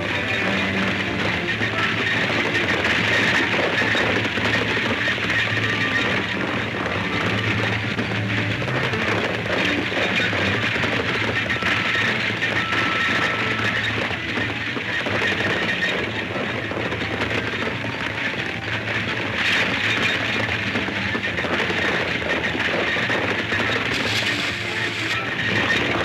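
Loud chase music from an old film soundtrack, played over a dense, steady rumbling noise that fits a galloping team and a racing stagecoach.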